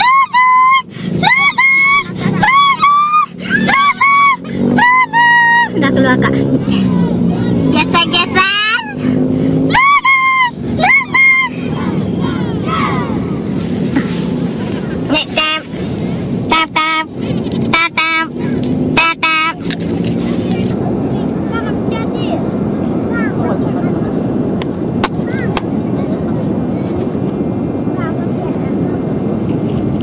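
A high-pitched voice calling out in short repeated phrases for the first ten seconds or so, then a steady rush of ocean surf with wind on the microphone.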